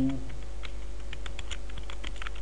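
Computer keyboard keystrokes: a run of irregular, quick key clicks as text is typed, over a steady low hum.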